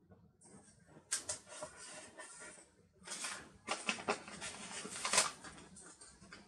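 Paper sticker sheets rustling and crinkling as stickers are handled and peeled off their backing close to the microphone, in two stretches of scratchy rustling with a short pause about three seconds in.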